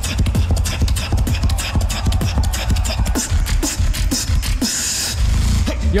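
Solo beatboxer performing live through a microphone: dense, fast kick, snare and hi-hat strokes over a deep bass, building up toward a drop. A hiss comes in about four and a half seconds in, followed by a held deep bass near the end.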